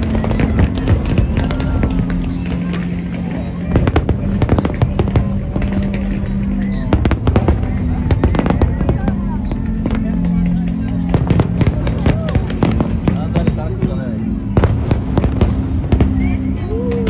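Fireworks display: aerial shells bursting in an irregular run of sharp bangs, often several in quick succession.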